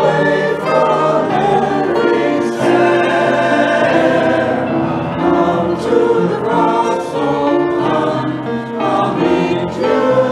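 Mixed-voice church choir, men and women, singing with piano accompaniment, continuing through the phrases without a break.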